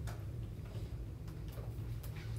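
Faint, irregular clicking at a computer, over a low steady hum.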